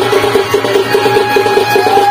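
Live Danda Nrutya folk-dance music: a fast, even percussion beat over a steady low tone, with a melodic note that swoops up and back down near the end.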